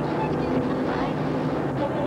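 A car engine drones steadily inside the cabin while the car radio is tuned by hand, bringing brief fragments of voices.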